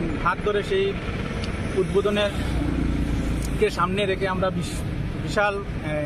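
A man talking outdoors, in short phrases with pauses, over road traffic. A motor vehicle's low engine rumble swells up about two and a half seconds in and fades about a second later.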